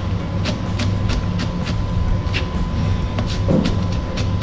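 Kitchen knife chopping spring onions on a plastic cutting board: quick, sharp knocks of the blade on the board, about three a second, over a steady low hum.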